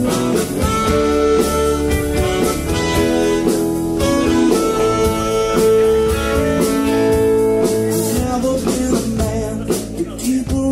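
Live soul-blues band playing an instrumental passage: electric guitars, bass guitar, drum kit and a trumpet and tenor sax horn section, with held chords over a steady beat.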